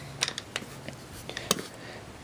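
Handling noise from an AR-15 rifle being turned over on a fleece blanket: a few light, scattered clicks and knocks of its metal and plastic parts.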